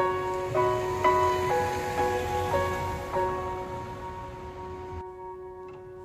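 Background music: a slow melody of ringing notes, a new note about twice a second for the first three seconds, then a held note slowly fading.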